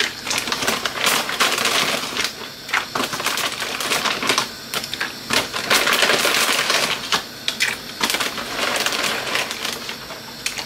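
Plastic bag of dried pappardelle pasta being handled, crinkling and rustling, with the dry pasta clicking and rattling inside in irregular bursts.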